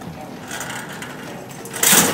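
Low, steady background noise in a supermarket aisle, with a short, loud rushing noise just before the end.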